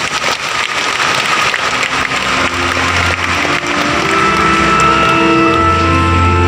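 A congregation applauding, then instrumental music starting about two seconds in with long held chords over a bass line, the opening of a hymn.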